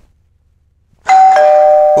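Electronic two-tone doorbell chime, loud. About a second in a higher tone sounds, and a lower tone joins it a moment later; both ring on steadily.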